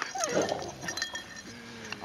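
Dog whining in excitement while greeting other dogs: a short high whine that falls in pitch near the start, then a longer, lower whine near the end.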